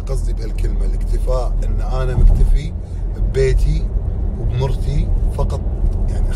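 Steady low rumble of a car heard from inside its cabin, with a woman's voice talking over it in short phrases.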